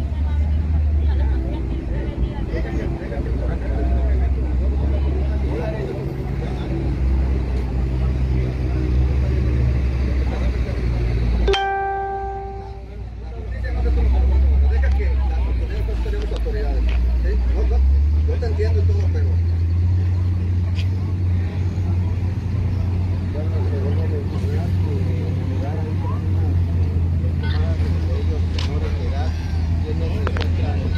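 Indistinct voices of bystanders over a steady low rumble. About eleven seconds in, a short pitched tone sounds for about a second.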